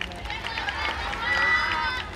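A group of voices calling out together, building to a held shout near the end.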